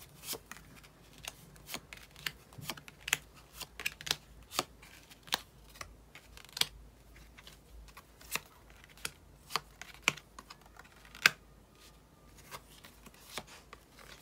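Tarot cards being dealt by hand and laid down one after another: a string of crisp, irregular card snaps and taps, the sharpest a little past the middle.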